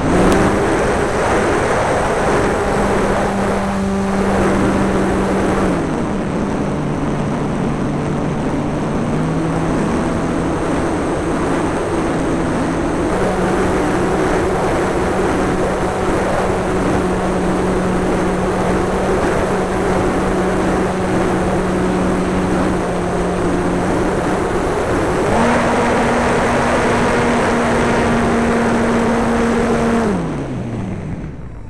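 Engine and propeller of a Su-26 aerobatic model plane heard from on board, running at a steady pitch that changes with the throttle. The pitch drops about six seconds in, climbs back in steps and rises sharply about four seconds from the end, all over heavy wind rush.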